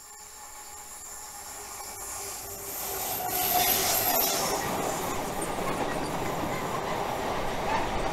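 Diesel-hauled freight train of bogie powder tank wagons approaching and passing close by, growing steadily louder over the first three seconds. A brief high-pitched wheel squeal comes about three to four seconds in, then the steady rolling noise of the wagons going by.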